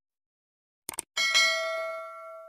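Two quick mouse clicks, then a bell ding that rings on and fades away. This is a subscribe-and-notification-bell sound effect.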